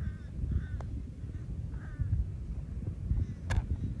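Wind rumbling on the microphone, with a bird giving three or four short calls in the first two seconds and a sharp click about three and a half seconds in.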